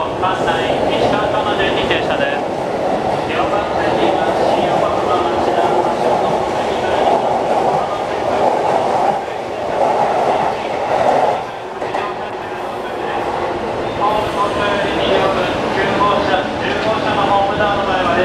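JR East E233-1000 series electric commuter train pulling out of a station and running close past the platform, a continuous loud rolling rush of wheels and cars as it gathers speed.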